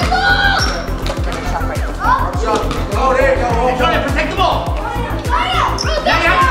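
Background music with a steady bass beat, over the sounds of a basketball game in a gym: voices and a bouncing ball.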